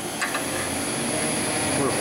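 Small screw press running on a variable-frequency drive: a steady mechanical hum with a thin high whine over it. Two or three light clicks come about a quarter second in.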